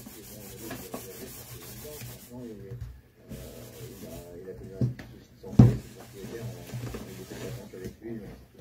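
Handling noise: something rubbing against the microphone, with a faint voice murmuring underneath. A sharp knock comes about five and a half seconds in.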